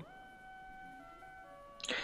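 Faint held electronic tones, a few notes at once that shift to new pitches about a second in, like a soft synth pad. Speech resumes near the end.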